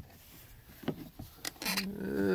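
A few faint clicks and taps of hands working a UTV's plastic side panel, trying to seat it back into place.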